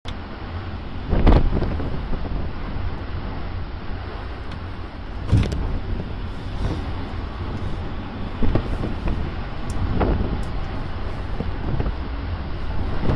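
Strong wind over a stormy sea buffeting the microphone: a steady low rushing noise with sharper gusts about a second in, around five seconds, and twice more near the end.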